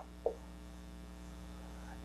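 Faint, steady electrical mains hum: a buzz made of many evenly spaced steady tones, with one tiny brief sound about a quarter of a second in.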